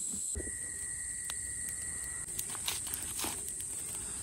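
Steady high-pitched chirring of insects such as crickets, joined for about two seconds by a second, lower steady insect tone. In the second half a stick campfire crackles with sharp snaps.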